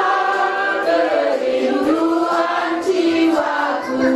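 A group of voices singing a slow hymn together, with long held notes that glide from one pitch to the next.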